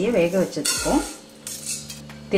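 A handful of raw rice poured from a small steel bowl into a stainless steel pot, the grains rattling against the metal in two short rushes, one about half a second in and one near the end.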